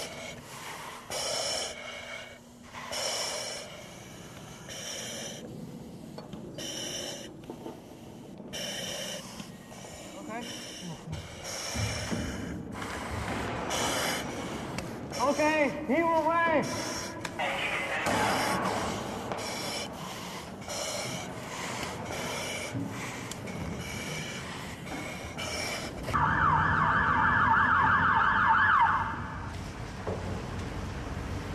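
Ambulance siren warbling rapidly for about three seconds near the end, the loudest sound. Before it come a string of short, sharp hissing sounds and gasping breaths from rescuers in breathing apparatus.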